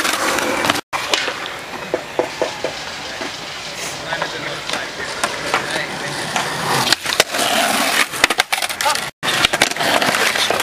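Skateboard wheels rolling on concrete and metal trucks grinding along an unwaxed concrete ledge, a rough scraping grind. Sharp board clacks from pops and landings come near the end.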